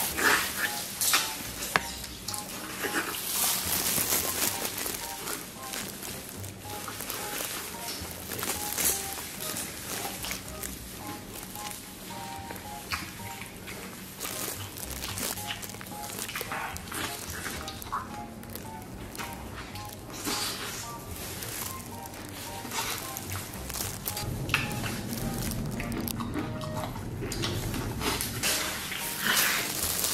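Light background music, a melody of short notes, over close eating sounds: a man biting into and chewing a braised beef trotter, with sharp little mouth noises scattered throughout.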